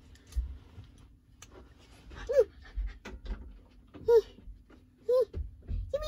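Four short, squeaky calls about a second apart, each rising and falling in pitch, over soft low bumps from handling the plush toy and bedding.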